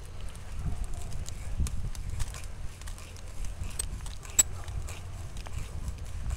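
A drill bit boring slowly into a birch trunk: low grinding and scraping of the bit in the wood, with a couple of sharp clicks in the second half.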